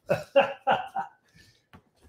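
A woman laughing: four short bursts of laughter over about a second.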